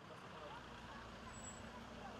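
Faint outdoor ambience: a steady low rumble of distant traffic, with faint voices.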